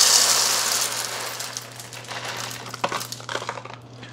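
Whole coffee beans poured from a bag into a clear plastic espresso-grinder bean hopper: a dense clatter of beans on plastic that thins out and fades over the first couple of seconds. It ends in a few scattered clicks.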